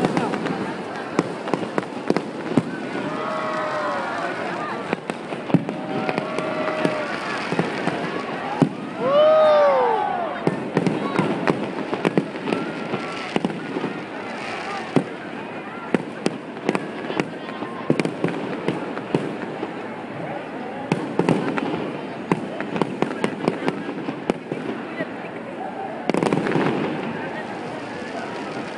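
Aerial fireworks bursting overhead, with a continual run of sharp pops and crackles. Crowd voices call out between the bursts, loudest about nine seconds in.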